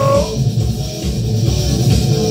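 Rock music with electric guitar and drums. A man's held sung note ends just after the start, and the rest is instrumental.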